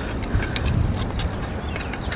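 Nylon straps, buckles and a plastic platform being handled on a hunting backpack: light clicks and rustling over a steady low rumble.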